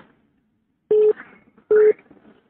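Two short telephone beeps over the phone line, each a steady tone about a quarter of a second long, a little under a second apart.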